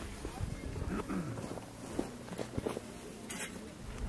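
Faint, indistinct voices with scattered rustling and handling noise. There is a brief scrape or rustle a little after three seconds in.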